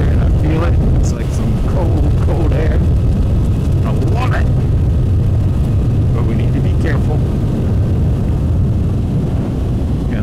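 Kawasaki Z900RS Cafe's inline-four engine running at a steady cruise, with wind rushing over the helmet-mounted microphone as a low, even rumble.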